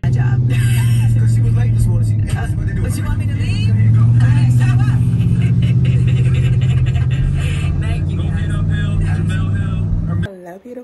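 Steady low drone of a car driving at highway speed, heard from inside the cabin, with voices talking over it.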